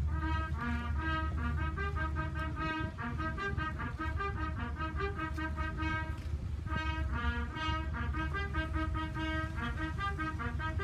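Military brass band playing short, quick brass notes, pausing briefly just after six seconds in and then carrying on, over a steady low rumble.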